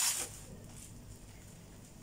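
A brief crinkle of a clear plastic clothing package being handled, right at the start, then quiet room tone.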